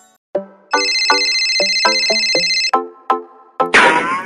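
A mobile phone ringing with a bright, trilling electronic ringtone for about two seconds over a plucked cartoon music melody, then a rising whoosh near the end.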